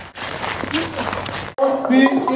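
A man laughing and talking, then an abrupt cut about one and a half seconds in to a loud hip-hop beat with a voice rapping over it.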